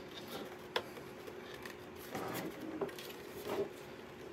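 Light clicks and handling rattle of hard plastic parts as a fan's clip mount is screwed onto its back, with one sharper click about three-quarters of a second in.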